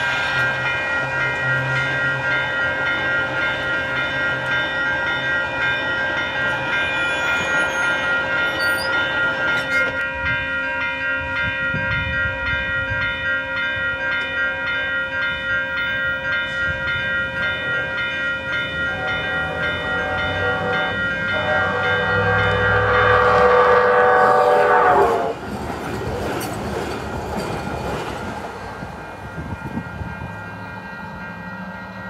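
Grade-crossing warning bell ringing at a rapid, even beat. About two-thirds of the way in, an LA Metro light rail train's horn joins it, louder than the bell, and cuts off sharply.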